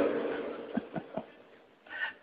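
A short pause in a man's talk: his voice dies away with a little room echo, then three faint short sounds and low background hiss before he resumes.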